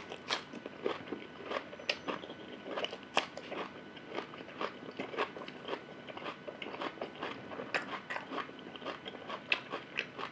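Close-up chewing and crunching of crisp raw cucumber, a dense irregular run of crunches and mouth clicks, several a second.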